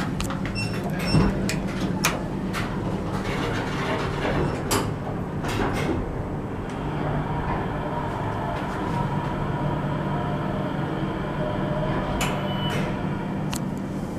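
U.S. Elevator hydraulic elevator car starting its run down. There are a few clicks and the sound of the doors sliding shut in the first seconds, then a steady hum as the car travels down, and a short high tone near the end.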